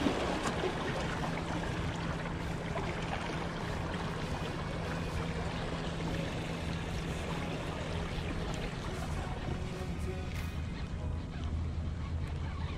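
Background music, with the wash of waves on the rocks underneath.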